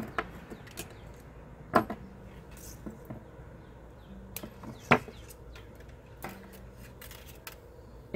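Handling of 18-gauge aluminium wire as it is pulled off its coil, with a few scattered light clicks, and a sharper click about five seconds in as the wire is snipped with flush cutters.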